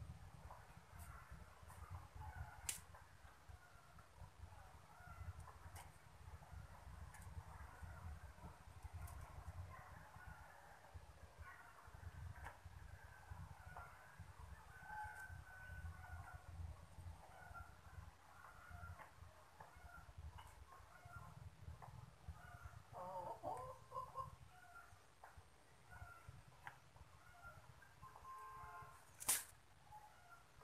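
Faint, scattered bird calls over a low steady rumble, with a sharp click shortly before the end.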